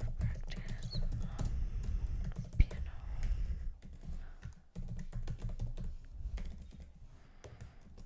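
Typing on a computer keyboard: a fast run of keystrokes that thins out and gets quieter in the last few seconds.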